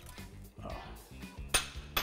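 Soft background music with a single sharp clink of a spoon against a small bowl about one and a half seconds in, as a spoonful of starch is measured out.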